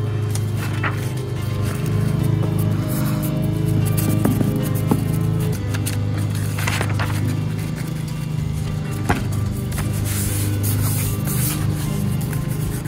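Background music with steady sustained low notes.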